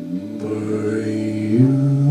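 Small jazz band playing live, led by tenor saxophone over hollow-body electric guitar, holding long sustained notes that step up in pitch and grow louder about one and a half seconds in.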